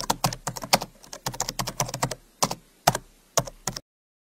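Computer keyboard typing: a fast, irregular run of key clicks that stops abruptly shortly before the end.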